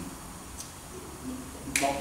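A pause in a man's talk in a hall, then near the end a single sharp clap of his hands coming together, just before his voice resumes.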